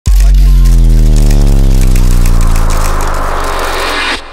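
Logo intro sound effect: a loud, deep bass tone hits suddenly and slowly slides down in pitch as it fades, with crackling hiss over it. It cuts off at about four seconds.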